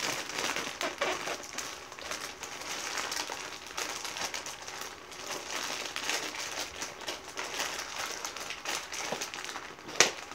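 A white shipping mailer being torn open and worked by hand: steady rustling and tearing, dotted with many small crisp clicks.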